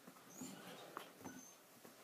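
Faint rustling and a few soft clicks from a plush puppet being handled and swung close to the microphone.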